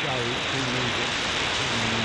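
A male presenter's voice received from a pirate station on 4065 kHz shortwave AM, half buried in a steady hiss of static. The static cuts off sharply above the receiver's audio bandwidth.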